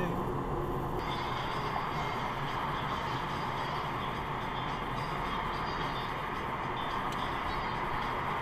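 Steady road and engine noise inside a car's cabin while driving in traffic.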